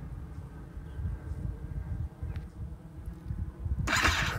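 Wind buffeting the microphone, an uneven low rumble, with a short loud burst of hiss near the end.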